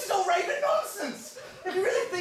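Actors' voices speaking, with chuckling.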